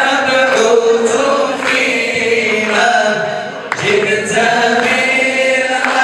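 Several voices singing together in a chant-like style, with long held notes that change pitch every second or so.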